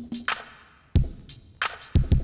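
Hip-hop drum-machine loop playing with reverb applied, so each kick and snare hit trails off in a long tail, like drums in a giant cathedral.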